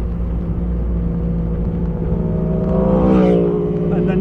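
1953 MG TD Mark II's 1250 cc four-cylinder engine running as the open car is driven, heard from inside the car. The engine note rises and then falls briefly about three seconds in.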